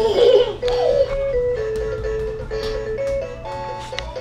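Simple electronic jingle from a toddler's ride-on toy, played one plain beeping note at a time. A child's brief high-pitched squeal comes right at the start.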